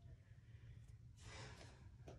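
Near silence with a steady low room hum and one soft exhaled breath about a second and a half in.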